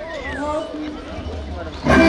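A drawn-out, wavering shouted voice over a steady low rumble; just before the end a band of flutes suddenly strikes up loudly.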